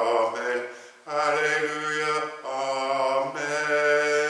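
Slow church singing: voices hold long notes phrase by phrase, with a brief break about a second in and shorter ones later.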